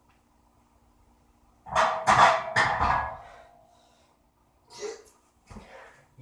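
A loaded barbell is racked onto a power rack's steel hooks about two seconds in. It makes a quick run of loud metal clanks and a short ring that fades within about a second. Two fainter, shorter knocks come near the end.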